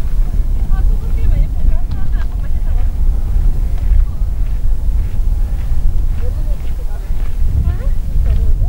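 Wind buffeting the camera microphone in a heavy, fluttering rumble, with faint snatches of people's voices in the background.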